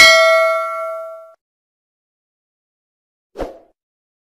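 Notification-bell ding sound effect from a subscribe-button animation, ringing out and fading away over about a second. A short soft blip follows near the end.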